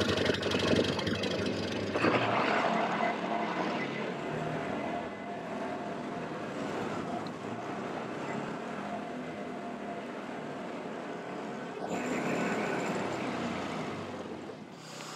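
Side-by-side utility vehicle running and driving, a steady engine and drive noise that gets a little louder about two seconds in.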